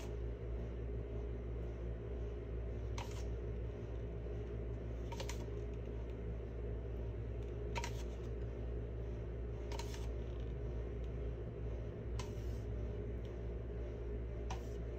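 Squeezable plastic bottle of acrylic paint being squeezed, giving short squirts of paint about every two seconds, six in all, over a steady low hum.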